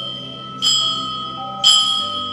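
Altar bell struck twice about a second apart, each stroke ringing on over the last, marking the elevation of the chalice at the consecration.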